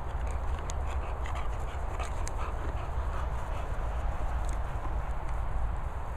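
A bulldog and a Bernese mountain dog at play: faint dog noises and a scatter of quick clicks in the first two or three seconds, over a steady low rumble.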